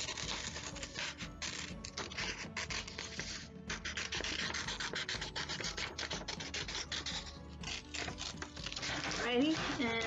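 Scissors cutting through paper, with steady rustling and crinkling of the sheet as it is turned, close to the microphone. A voice starts near the end.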